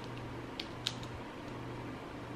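Two short, faint clicks from the plastic lid of a slime jar being twisted open, over a low steady hum.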